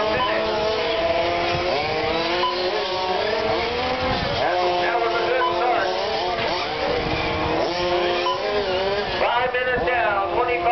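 Several radio-controlled Formula 1 model race cars running on the track, a high whine from several cars at once that rises and falls in pitch as they speed up and slow for the corners.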